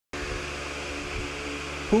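Steady background hum and hiss with a few faint steady tones, then a voice starts speaking near the end.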